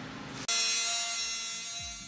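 Angle grinder with a cut-off wheel cutting a steel plate: a sudden hissing, buzzing whine starts about half a second in and gradually fades. A falling bass note of background music comes in near the end.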